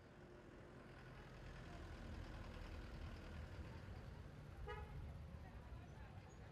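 Faint low rumble of a passing motor vehicle, building up and easing off, with a brief toot-like pitched sound near the end.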